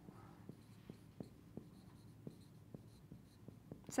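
Dry-erase marker writing on a whiteboard: faint scratching strokes with small irregular taps as the letters are formed.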